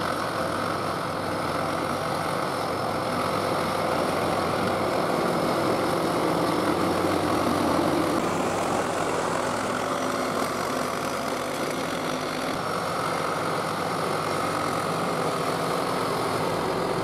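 1976 John Deere 450-C crawler bulldozer's diesel engine running steadily under load as the blade pushes a pile of dirt and rock. The engine swells slightly about midway.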